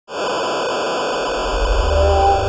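TV static sound effect: an even hiss that starts abruptly, with a low bass note swelling in under it near the end as intro music begins.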